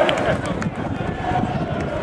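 Crowd of football supporters celebrating a title win, many voices shouting at once.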